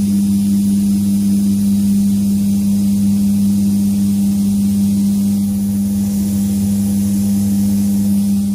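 Paint spray booth's ventilation fan running with a steady low hum.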